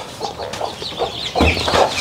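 A hen clucking amid many short, high peeps from the ducklings she is brooding, with a fuller call about one and a half seconds in.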